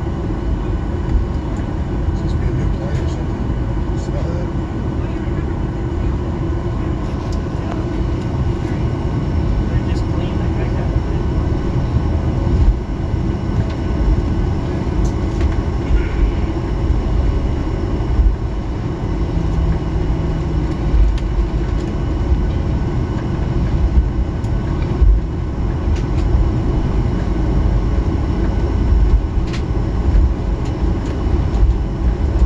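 Cabin noise of a Boeing 737-800 taxiing: a steady low rumble from the airframe and the idling CFM56 jet engines, with faint steady whining tones above it and a few small clicks.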